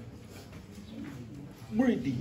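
A bird cooing faintly in a lull in speech, with a man's voice starting again near the end.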